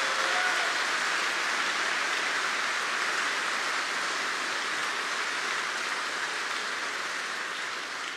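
Audience applauding steadily, the clapping easing off a little near the end.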